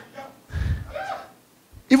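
A man preaching over a microphone pauses briefly: faint voice sounds and breath in the gap, a moment of near silence, then he starts speaking again near the end.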